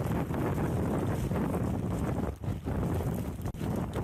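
Strong typhoon wind buffeting the microphone: a steady low rushing noise with a short dip a little past halfway through.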